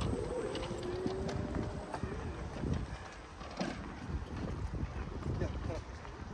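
Outdoor walking ambience: indistinct voices of people nearby and irregular footsteps on a paved path.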